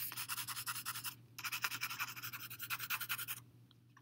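Coloured pencil shading on paper: rapid back-and-forth scratchy strokes in two spells, with a short break about a second in.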